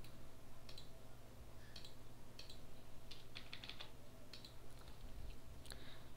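Typing on a computer keyboard: scattered keystrokes with a quick run of keys a little past the middle, over a low steady hum.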